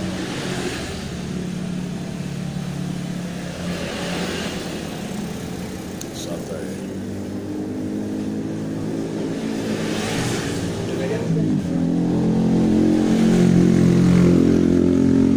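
A motor vehicle engine running steadily, growing louder in the last few seconds, with a few swells of passing traffic.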